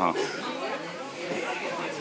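Indistinct chatter of several voices, after a brief laugh right at the start.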